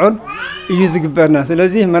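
A man speaking, mostly continuous talk. In the first half second a drawn-out vocal sound rises and falls in pitch.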